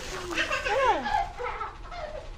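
A short animal call sliding steeply down in pitch, about a second in.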